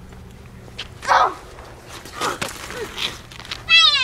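A child's high-pitched cry, sliding down in pitch, near the end, as a boy is knocked off a bicycle onto the pavement. A brief knock is heard about halfway through.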